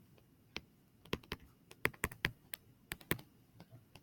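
Stylus tapping and clicking on a tablet screen while writing by hand: about ten faint, sharp, irregular taps.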